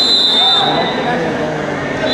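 A referee's whistle gives one short, steady high blast of about two-thirds of a second at the start, over the constant chatter of a crowded gym; another blast begins right at the end.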